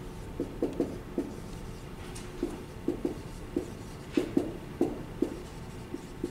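Dry-erase marker writing on a whiteboard: an irregular run of short squeaks and taps as the letters are drawn.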